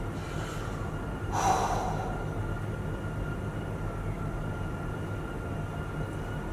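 A man's single short breath, a quick hiss of air about a second and a half in, over a steady low room hum with a faint thin whine.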